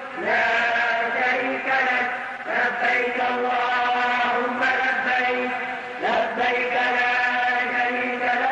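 A single male voice chanting unaccompanied in long, drawn-out notes, sliding up into each new phrase.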